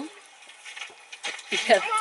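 A quiet sip from a mug of hot chocolate, followed about a second and a half in by a woman's voice.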